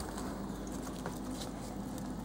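Young hamsters lapping liquid from a small ceramic dish and shuffling on newspaper bedding: scattered faint small ticks and rustles over a steady low room hum.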